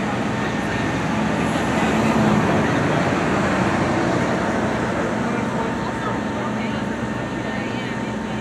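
Busy city street ambience: many people talking indistinctly, over a steady hum of traffic and idling vehicles.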